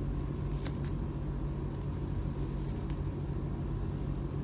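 Steady low background hum and rumble, with a couple of faint ticks and rustles as a leather motorcycle gauntlet glove is handled and strapped on.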